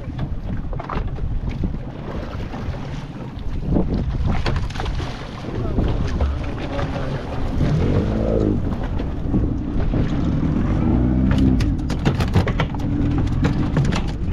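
Wind buffeting the microphone on a small open fishing boat at sea, with the crew's voices and a short call about eight seconds in. Near the end comes a quick run of knocks as freshly landed mahi-mahi flap on the boat's deck.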